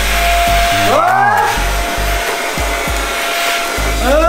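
HYD cordless handheld vacuum cleaner running and sucking up loose dirt from a floor, a steady motor and airflow whir.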